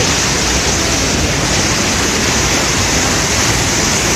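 Muddy floodwater from heavy rain rushing down a rocky cascade and churning over stones: a loud, steady rush of water.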